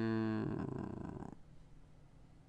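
A man's drawn-out hesitation sound, a wordless vocal filler held at one steady pitch that breaks off about half a second in and trails away into a rough, creaky breath. After that only a faint low hum remains.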